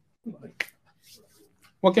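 A pause in a man's talk: a single sharp click about half a second in, among a few faint sounds, before his speech resumes near the end.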